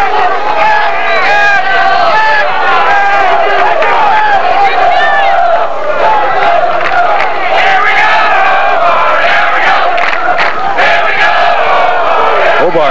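Large stadium crowd shouting and cheering, with many voices yelling over one another at a steady level.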